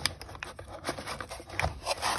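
A cardboard box and the metal supercharger pulley inside it being handled: an irregular run of small scrapes, rubs and clicks.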